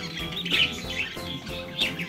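Budgerigar chicks giving a few short, high cheeps, over quiet background music.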